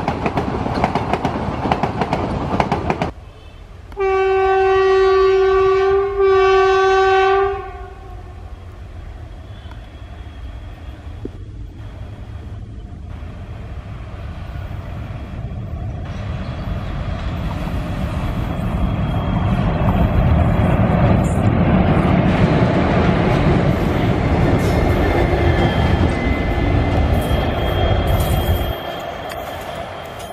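Coaches of a diesel-hauled express train rolling past, then a locomotive horn sounding two long blasts. After that a train approaches, its rumble growing steadily louder before cutting off suddenly near the end.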